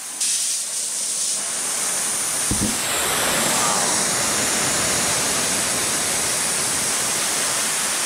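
Oxyhydrogen torch flame hissing loudly and steadily, run up to a large flame of about 1,500 watts. The hiss comes on suddenly just after the start and grows fuller over the next couple of seconds, with one brief low thump about two and a half seconds in.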